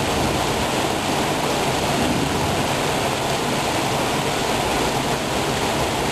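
Small waterfall pouring over rock into a pool: a steady rush of falling water.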